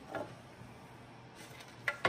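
Hard plastic parts of an iRobot Clean Base being handled: a soft knock just after the start, a few faint ticks, and a sharp click near the end.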